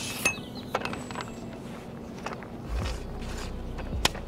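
Long-reach pole pruner snipping off the tip of a young walnut tree's leader in a heading cut: a sharp snap about a quarter second in, then several lighter clicks and rattles from the pruner's pulley and blade mechanism.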